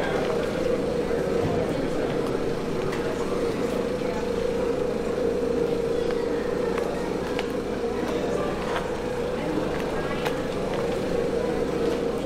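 City background noise: a steady wash of traffic with indistinct voices, a constant hum and a few faint clicks.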